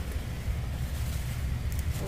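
Steady low rumble of wind or handling noise on the microphone, with a faint brief rustle near the end.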